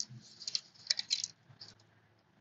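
Quiet, irregular metallic clicks and ticks of a Gerber Diesel multi-tool's handles and pliers jaws being worked by hand, with a small cluster of them about a second in.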